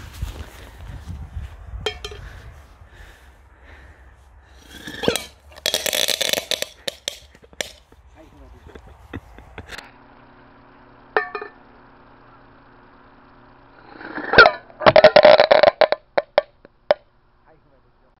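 A crackling-ball firework shell packed with mixed gunpowder going off: a brief rush of hiss a few seconds in, then near the end a sharp crack and about a second and a half of rapid crackling pops.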